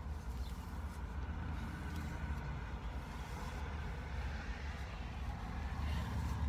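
Steady low rumble of a car engine idling, heard from inside the car's cabin.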